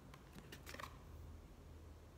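Near silence with a few faint, short clicks in the first second, from a stiff oracle card being handled between the fingers, over a faint low room hum.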